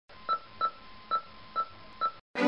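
Four short electronic beeps, like touch-tone keypad presses, at uneven spacing over faint hiss and a thin steady tone: an intro sound effect played as a logo animates in.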